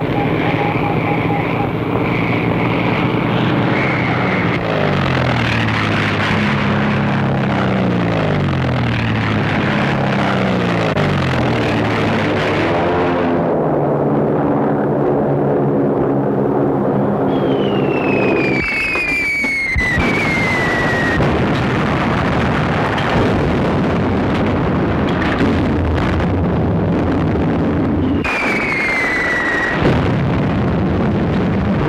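Aircraft engines droning, the pitch sliding down in steps and then holding steady. About two-thirds of the way in comes the falling whistle of a dropping bomb, and another comes near the end.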